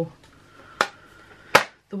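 Two sharp clicks about three-quarters of a second apart, the second louder: a metal Schmincke watercolour tin being handled and set down on a table.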